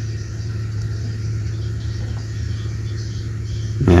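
A steady low droning hum, even in level throughout.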